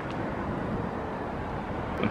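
Steady outdoor urban background noise: a low rumble with a fainter hiss above it and no distinct events.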